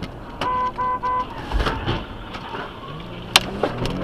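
Car horn giving three short honks, then a low thump, and a single sharp crack as one car slams into another in a freeway collision.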